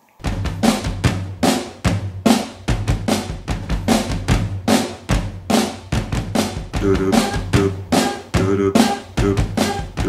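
A drum-machine beat: bass drum and snare strikes in a steady, quick rhythm over a continuous low bass note. Pitched notes join the beat about seven seconds in.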